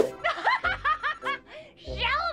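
A cartoon woman's voice laughing in a rapid run of about eight short, high 'ha's that tails off after about a second and a half.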